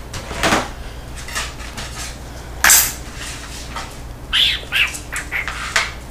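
Cardstock, clear plastic cutting plates and small metal dies being handled on a craft table: a series of short rustles and clacks, the loudest about two and a half seconds in.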